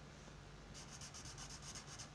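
Felt-tip marker drawing on paper: faint, quick short strokes, about ten scratches a second, beginning about three-quarters of a second in.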